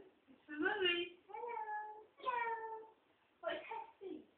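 A toddler's high-pitched, wordless vocalising: four short, drawn-out sounds, some gliding slightly in pitch.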